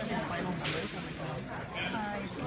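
Crowd chatter from many people talking at once, with a brief sharp swish a little over half a second in.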